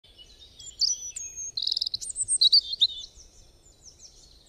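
Birdsong: a series of high chirps and whistles with a quick trill about one and a half seconds in, fading out toward the end.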